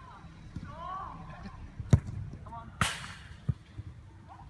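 A futsal ball kicked hard: one sharp smack about two seconds in, the loudest sound, followed a little under a second later by a second, noisier impact, with players shouting in the distance.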